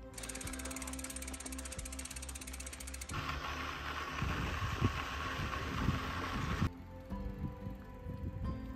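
Bicycle freewheel hub clicking rapidly for about three seconds. Then comes a rougher rushing noise with scattered knocks from riding a dirt trail, over soft background music.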